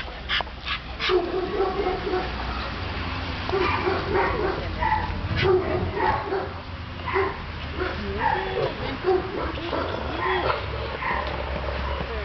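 Dogs barking and yipping in short calls, repeated throughout.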